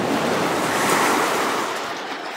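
A rushing water splash sound effect, one noisy surge that swells to its peak about halfway through and then starts to fade.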